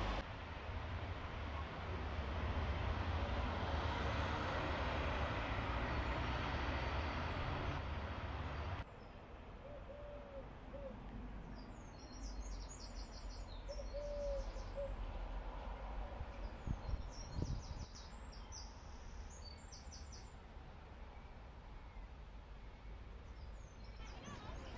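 Steady outdoor noise on a town street, a low rumble with hiss, cuts off suddenly about nine seconds in. Quieter ambience follows, with small birds singing in short, high chirping phrases and a couple of brief low hooting calls.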